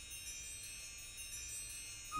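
Pipe organ playing soft, high sustained notes that ring with a chime-like shimmer.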